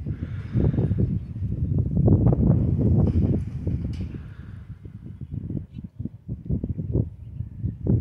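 Wind buffeting the microphone as a low, gusty rumble, loudest about two to three seconds in and easing after, with small scattered knocks from the camera being handled.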